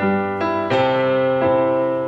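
A Korg stage keyboard playing an electric piano sound: a solo instrumental passage of sustained chords, with a new chord struck every half second or so.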